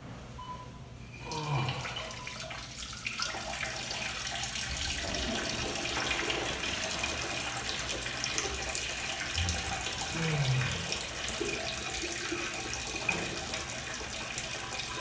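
Tap running into a restroom sink: the water comes on about a second in and runs steadily.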